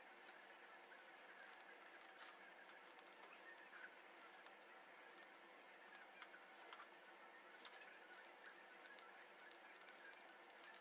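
Near silence: faint room tone with a few soft, faint ticks.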